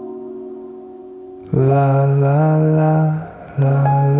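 Recorded pop music. A held chord fades during the first second and a half, then a louder, low melody enters in smoothly gliding phrases and pauses briefly just before the end.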